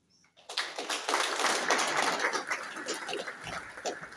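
Audience applauding. It starts about half a second in, is loudest for the next couple of seconds, then thins out.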